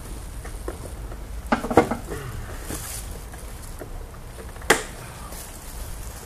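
Handling of engine-bay wiring and connectors: a short clatter of clicks about a second and a half in, then one sharp click near the end, over a low steady hum.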